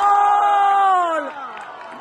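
A man's long, drawn-out goal shout, 'gooool', held on one high pitch, then sliding down in pitch and trailing off about a second and a half in.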